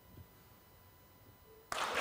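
Near silence, then an audience suddenly breaks into clapping all at once near the end, on spotting the target picture it was told to clap for.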